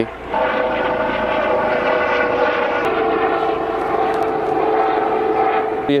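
Helicopter flying overhead: a steady engine and rotor drone with a whining tone that drops slightly in pitch about three seconds in.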